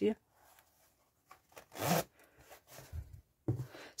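An empty fabric pencil case being handled and set down on a desk: one brief rustle a little under two seconds in, then a few faint soft handling sounds.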